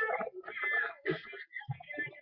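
A young girl's voice making a run of short, high-pitched vocal sounds with brief breaks between them.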